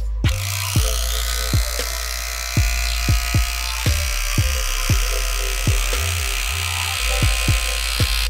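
Rotary hammer running at speed, its long bit boring up into a wooden beam, starting a moment in. Under it runs electronic music with a heavy kick-drum beat.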